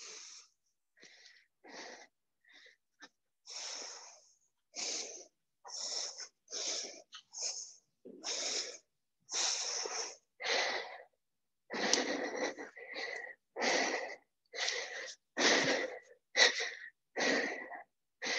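A woman breathing hard while exercising: short puffed breaths about once a second, growing louder through the interval.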